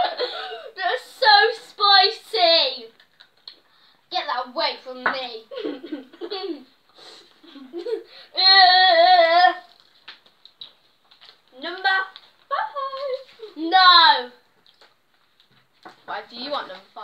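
Young girls' voices giggling and squealing without words, with one held, wavering squeal about eight seconds in.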